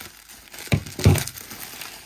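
Bubble wrap crinkling and rustling as a taped bundle is pulled open by hand, with two louder rustles a little under and just past a second in, the second the loudest.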